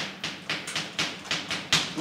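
Chalk tapping on a blackboard as a line of formulas is written: a quick series of sharp strokes, about four a second.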